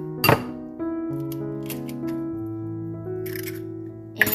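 Background music with held notes; about a third of a second in, a sharp crack as an egg is knocked on the rim of a bowl, followed later by a few lighter clicks.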